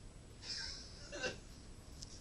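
A person's short breathy sound, then about a second in a brief vocal sound that falls in pitch, close to the microphone.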